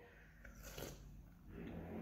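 Faint sipping of hot tea from a ceramic cup, with soft mouth sounds in a quiet pause.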